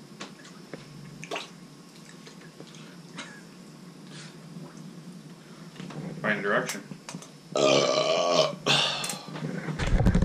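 A person's burp: a long, loud belch about seven and a half seconds in, with shorter voiced sounds just before and after it. The seconds before are quiet, with only a few faint clicks.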